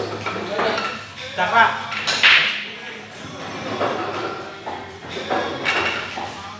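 Indistinct voices of people talking in a large, echoing hall over a steady low hum, with one short, loud noisy burst about two seconds in.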